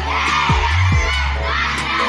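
A crowd of children shouting together in repeated calls, over loud music with a deep bass.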